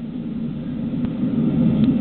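Steady low background rumble, an even noise without any clear pitch or rhythm that grows slowly louder.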